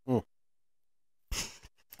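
A man's short closed-mouth "mm" with falling pitch, his reaction to coffee that is too hot. About a second later comes a breathy exhale.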